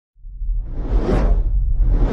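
Cinematic title sound effect: a deep low rumble starts just after the opening and holds, while a whoosh swells up and peaks a little past a second in.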